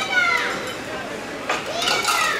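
High-pitched children's voices calling out and cheering: two falling cries, one at the start and another about a second and a half later, over a general murmur of voices.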